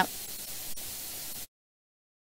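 Faint steady hiss of studio room tone, with one tiny click, cutting to dead silence about one and a half seconds in.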